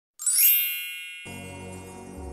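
A bright, high chime rings out and fades, then soft background music comes in just over a second later.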